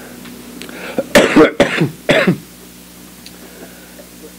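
A person coughing: three harsh coughs in quick succession starting about a second in. A steady low hum runs underneath.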